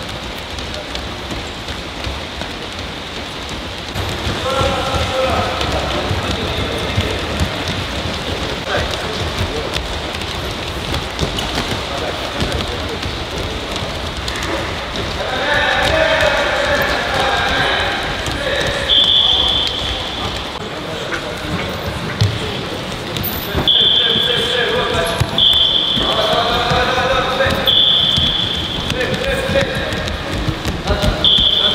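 Many bare and shod feet thudding on a wrestling mat as a group of wrestlers jogs and moves through a warm-up, with voices calling out over them. In the second half come several short high-pitched tones, each about a second long.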